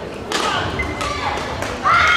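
Three sharp knocks from badminton play, echoing in a large sports hall, among voices. A loud raised voice starts near the end.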